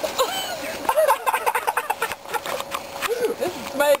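Laughing voices and short exclamations, mixed with rustling and knocks from the camera being handled.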